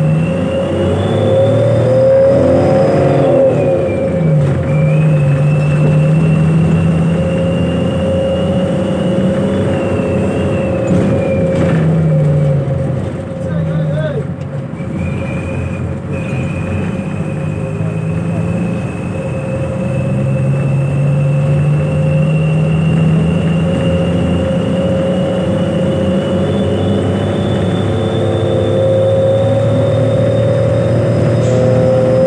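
Bus engine running under load, heard from inside the cabin, its pitch climbing and then dropping several times as it goes up through the gears. A high whine rises and falls along with it.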